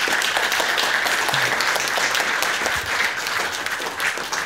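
Audience applause: many people clapping together in a dense, steady patter that eases off slightly toward the end.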